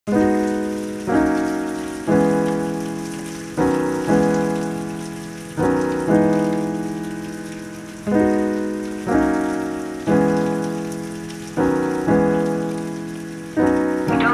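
Keyboard chords struck in a slow repeating pattern, each left to fade before the next, over a steady hiss of rain.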